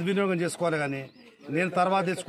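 A man speaking in Telugu, with a short pause about a second in.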